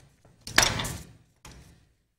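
Wooden rolling pin handled on a countertop: a knock and short scrape about half a second in, then a fainter knock near the end.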